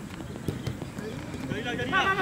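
A football being struck on an artificial-turf pitch, a few sharp knocks, with a player's loud call near the end.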